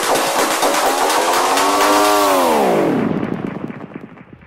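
Techno/tech-house DJ mix with a pitched sound effect that glides slowly up, then sweeps down steeply about two and a half seconds in. Near the end the treble of the music cuts out and the level drops, as at a transition between tracks.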